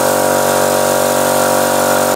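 Small portable electric air compressor running with a steady, even hum, pumping air into a Onewheel's flat tyre to about 3 bar.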